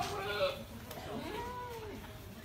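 Goats bleating: a short call at the start, then a longer call that rises and falls about a second in.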